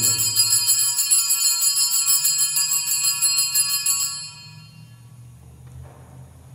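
Altar bells shaken in a fast, continuous jingle of many ringing tones, rung at the elevation of the chalice during the consecration; the ringing stops suddenly about four seconds in.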